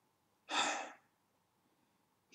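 One short, audible breath from a man, about half a second in.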